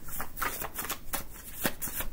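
A deck of reading cards being shuffled by hand: a quick, irregular run of short flicks.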